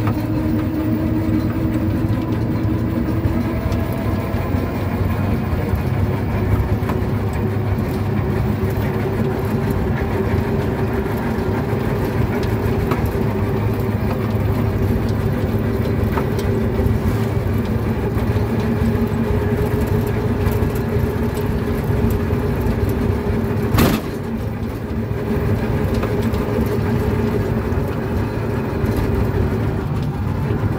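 Engine of a moving road vehicle heard from inside while riding, running as a steady drone whose pitch creeps slightly upward. A single sharp knock comes about three-quarters of the way through.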